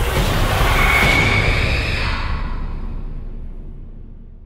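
Horror-trailer music and sound design: a dense, loud wash of noise that slowly dies away, the high end fading first, with a brief high tone about a second in.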